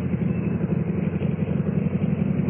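Radio-drama sound effect of a motorcycle engine running steadily, a low pulsing hum with no change in pitch, heard through the narrow band of an old broadcast recording.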